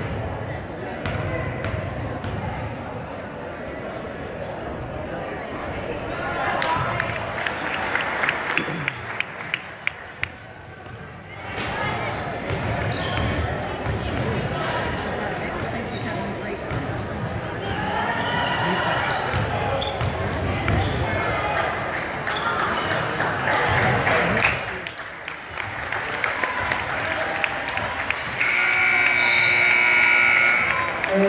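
Crowd of spectators talking and calling out in a gymnasium while a basketball bounces on the hardwood court, with a run of sharp bounces a few seconds in. A steady electronic game buzzer sounds near the end.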